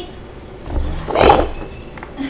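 A pet growling once, roughly, for about a second from just under a second in, as it plays rough: it is pulling a person's hair in tug of war.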